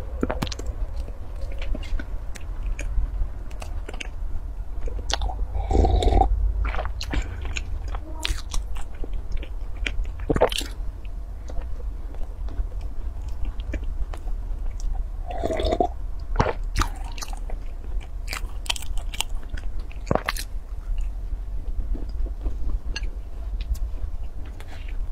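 A person chewing and biting a soft baked pastry close to the microphone, with many short wet mouth clicks and smacks. A steady low hum runs underneath.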